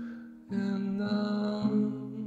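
Acoustic guitar playing a slow instrumental passage of plucked notes that ring on. A fresh note comes about half a second in and another at about one and a half seconds.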